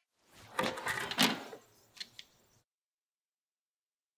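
Plastic vacuum-chamber dome being lifted off its base plate, the vacuum just released: about a second of scraping and knocking, then two short clicks about two seconds in.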